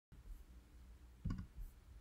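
A short computer mouse click about a second in, over faint room tone.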